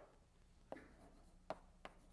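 Faint chalk on a blackboard: three light taps, the first trailed by a short scratch, as something is written up.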